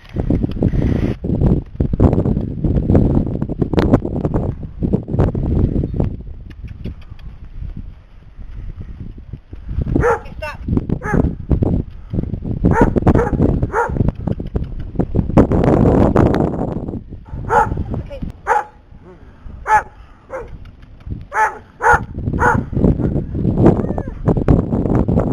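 A dog barking repeatedly in short, sharp barks from about ten seconds in, over a low rumbling noise.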